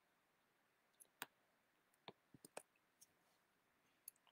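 Faint clicking at a computer: about eight short, sharp clicks between one and three seconds in, the second one the loudest.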